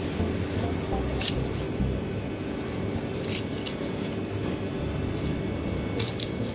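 Large knife cutting kingfish into steaks, with a few sharp cracks and clicks as the blade goes through skin and backbone and meets the cutting board. A steady low hum runs underneath.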